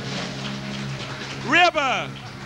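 A band's final chord breaks off, then about one and a half seconds later a voice calls out once, briefly, its pitch rising and then falling.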